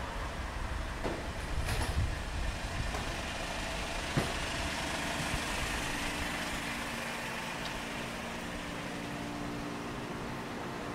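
Street traffic: a low vehicle rumble with a couple of short knocks, settling into a steady mechanical hum in the second half.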